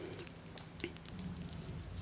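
Quiet pause: faint low room hum with a few faint, short clicks.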